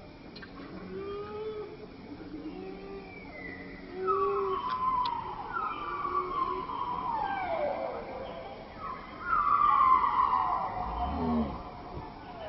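Baby macaque crying: a few short soft calls, then two long, loud wails that fall in pitch, the first about four seconds in and the second near ten seconds.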